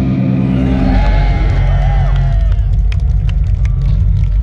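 A death metal band's last chord ringing out through the PA and cutting off about a second in, then the crowd shouting and cheering over a steady low rumble.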